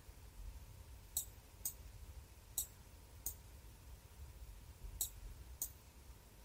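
Faint computer mouse clicks, about six of them at irregular intervals, some in close pairs.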